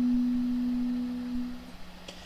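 A 256 Hz tuning fork (middle C) ringing a single steady pure tone with a faint overtone an octave above. It slowly weakens and dies away shortly before the end.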